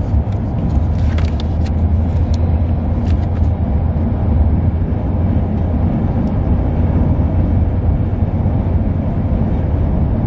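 Steady low road and engine rumble heard inside a moving car's cabin, with a few light clicks about one to three seconds in.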